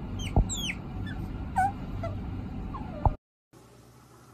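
A bird making several short chirps that fall in pitch, with two sharp knocks, one near the start and one just after three seconds. The sound then cuts off suddenly and comes back as a faint hiss.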